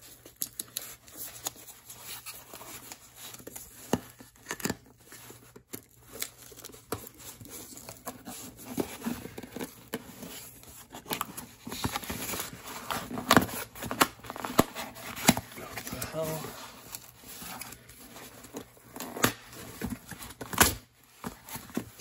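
Cardboard shipping box being torn open by hand: irregular ripping and crumpling with sharp crackles, the loudest tears in the second half. The box is hard to open.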